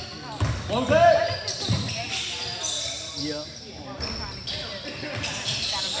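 Basketball bouncing repeatedly on a hardwood gym floor during play, echoing in the large hall, with a loud shout from a player about a second in.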